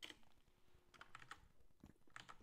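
Faint, scattered keystrokes on a computer keyboard: a handful of separate clicks.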